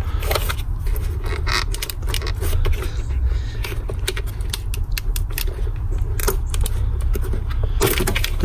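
Clicking and rattling of plastic wiring-loom clips and connectors being worked loose by hand in a car's engine bay, many small irregular clicks, over a steady low hum.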